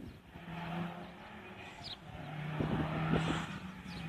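Rally car engine heard from a distance, a steady drone that grows louder in the second half as the car approaches along the stage.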